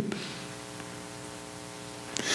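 Steady electrical hum, several even tones held at one pitch, over a light hiss: the background noise of the sound or recording system.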